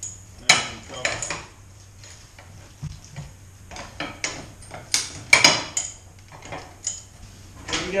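Metal tools and a metal equipment stand being handled: irregular metallic clanks and rattles, the loudest cluster about five seconds in. No powered machine is running.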